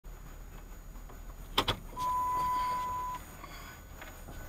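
Two sharp clicks in quick succession, then a single steady electronic beep lasting just over a second, over a low hum.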